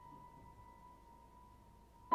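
The faint, slowly fading tail of a single high piano note, left ringing on as one steady tone.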